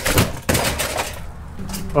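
Knocks and clatter of junked car parts and cardboard boxes being moved by hand while rummaging through a pile. The sharpest knocks come at the start, then a second of rustling and rattling that dies away.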